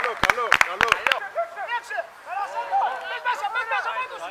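Several voices shouting and calling out over each other, with no clear words. A quick run of sharp clicks in the first second.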